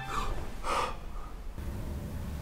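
A man waking with a start, gasping: two sharp breaths about half a second apart.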